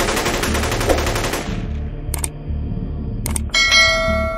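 Outro sound effects over a low, evenly pulsing beat: a burst of rapid machine-gun fire that stops about a second and a half in, then two single sharp cracks, then a metallic clang that rings on near the end.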